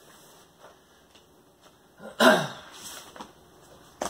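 A man's single loud cough about two seconds in, among faint rustles and ticks from a vinyl record's paper sleeve being handled.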